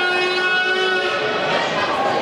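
A horn sounds one steady, many-toned blast lasting about a second and a half.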